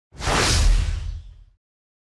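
A single whoosh sound effect with a deep rumble underneath, coming in quickly and dying away within about a second and a half.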